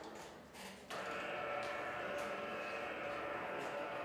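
Steady electrical hum and hiss from a classroom sound system, switching on suddenly about a second in and then holding unchanged, with a couple of faint clicks.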